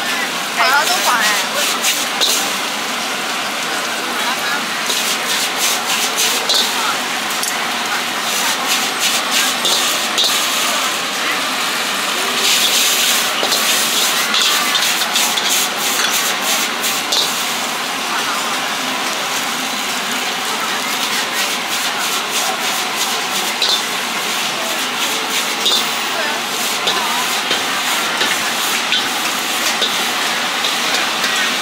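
Wok stir-frying over a high gas flame: a steady sizzle and burner hiss, broken by quick runs of metal clicks and scrapes as a ladle works against the wok.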